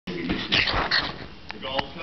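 A Staffordshire bull terrier at a person's feet, making two breathy bursts of noise in the first second, then a couple of short clicks.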